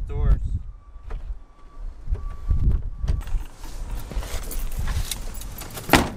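Getting into a car: keys jangling and things being handled, with a few faint short beeps, then the car door shutting with one loud thump at the very end.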